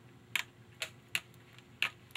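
Four sharp, small clicks, unevenly spaced, from handling a Remington Nylon rifle's stripped nylon stock and its small trigger parts while the sear cross pin is worked out.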